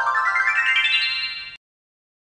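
Short TV advertising-break jingle: a quick run of bright notes climbing steadily in pitch, which cuts off suddenly about a second and a half in.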